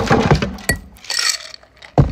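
Ice cubes dropped into a pint glass: several sharp clinks and knocks in the first second, then a bright rattle of ice against glass.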